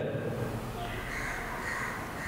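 A faint bird calling in the background over low room noise.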